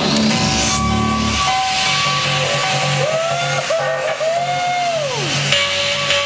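Hardstyle DJ set played loud over a PA: the beat drops away into a breakdown with a rising hiss sweep, then a synth line glides up and down in pitch and slides down near the end over a steady bass note.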